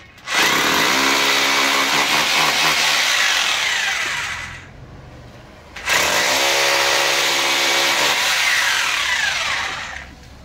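A corded power drill boring into the wall in two runs of about four seconds each, with a short pause between them. Its motor hum rises in pitch as it spins up and falls away as each run stops.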